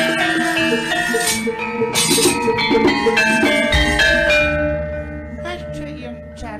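Javanese gamelan playing: bronze metallophones ring out a stepped melody over drumming, with a low thud a little past halfway. The music then drops in loudness over the last second and a half.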